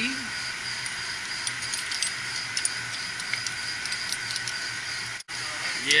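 Steady hum of running mechanical-room equipment, with a few light metallic clicks and rattles from parts being handled. The sound cuts out for an instant about five seconds in.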